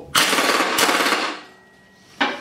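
Pneumatic impact wrench hammering for about a second and a quarter, then stopping, as it runs down and tightens the bolt on a new mower-deck blade.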